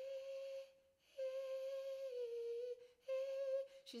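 A woman's light, head-resonant vocal demonstration: three held high notes on nearly the same pitch, the middle one dipping a step lower partway through. The notes are sung with little breathiness and firm vocal-fold closure.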